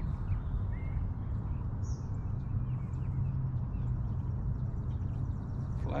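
Electric trolling motor running with a steady low hum, with a few faint bird chirps over it.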